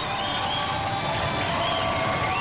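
Studio audience cheering and clapping, a steady dense wash of crowd noise with a few shouts and whoops above it.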